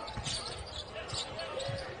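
A basketball being dribbled on a hardwood court, bouncing in short, uneven thumps, with sneaker squeaks and a low arena murmur.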